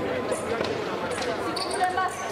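Chatter of many voices in a large, echoing sports hall, with a few short sharp knocks, about one every half second to second.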